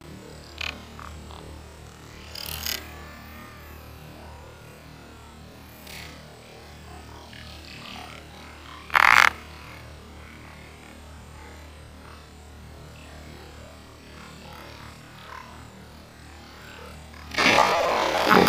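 Quiet ambience with a steady low hum and a few brief sharp sounds, the loudest about nine seconds in. Near the end it turns suddenly loud as a giant snakehead (toman) strikes the surface lure with a splash, and music comes in.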